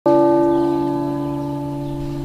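A single stroke of a church bell, ringing on with several steady tones and slowly fading.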